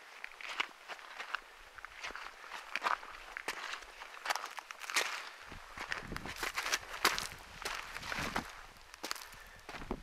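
Footsteps of a person walking over a gravelly slope through dry brush, irregular steps about one or two a second. A low rumble joins about halfway through.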